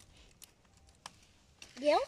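A few faint, scattered clicks over a quiet background, the sharpest about a second in; a woman's voice starts near the end.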